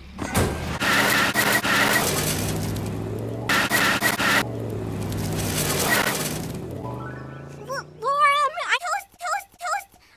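Cartoon sound effect of a van engine running hard and pulling away, with two louder hissing bursts of spinning tyres, then fading as it goes. A short voice-like sound follows near the end.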